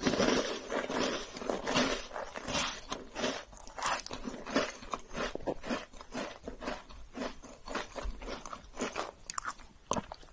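Close-miked chewing of a chocolate chip cookie sandwich: irregular crunchy, sticky mouth sounds that thin out as the mouthful is chewed down, with a fresh bite right at the end.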